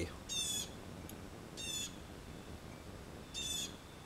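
A bird calling three times in short, high calls, about one and a half seconds apart.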